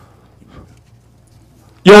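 A quiet pause of room tone with a faint low hum from the microphone system. Near the end a voice starts speaking loudly into the microphone.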